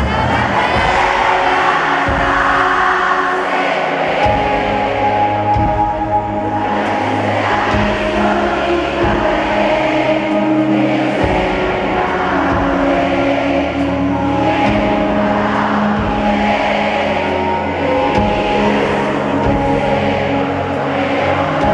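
Live pop band music through an arena's sound system, recorded from among the audience, with the crowd's voices singing along.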